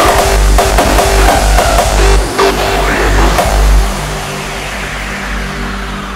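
Hardstyle track: pounding kick and bass until about four seconds in, when the kick drops out and the music falls away into a quieter breakdown under a falling sweep.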